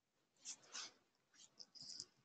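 Near silence: room tone, with a few faint, short, soft noises.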